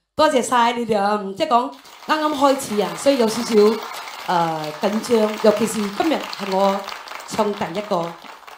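A woman talking into a handheld microphone between songs, with an even hiss under her voice.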